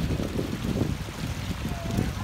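Outdoor swimming pool ambience: water splashing and lapping, with uneven wind rumble on the microphone.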